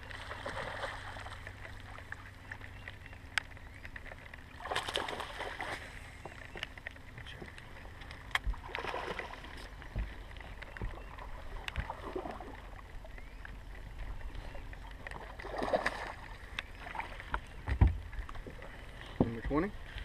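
Sounds of a largemouth bass being fought and landed from a boat: a steady low rumble with a few sharp knocks and several short, louder splashy bursts of noise.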